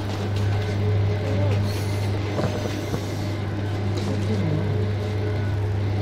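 Steady low hum of a walk-in chiller's refrigeration unit, with faint voices in the background.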